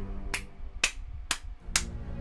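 A person clapping his hands, slow and even, about two claps a second, over low sustained music.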